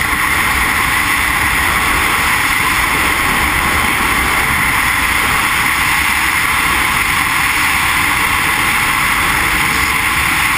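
Steady, loud rush of wind over a helmet-mounted camera's microphone during a BASE jumper's flight over the mountainside.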